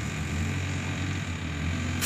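A steady low mechanical drone with a light hiss over it, with no distinct events.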